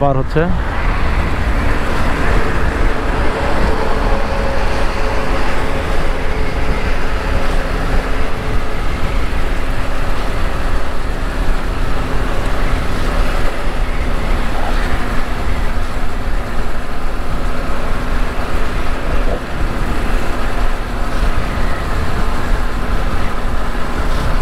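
Motorcycle riding at steady speed: heavy wind noise on the microphone over a steady engine hum, with no change in pace throughout.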